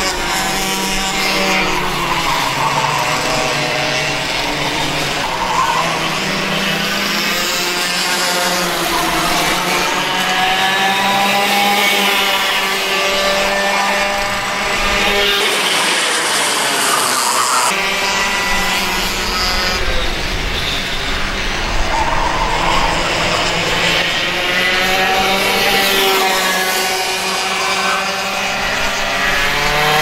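Small two-stroke racing kart engines revving up and down as a pack of mini and micro karts laps the track, with pitch rising on the straights and dropping into the corners.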